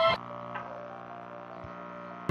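Louder music cuts off just after the start, leaving a low, steady drone of several stacked tones.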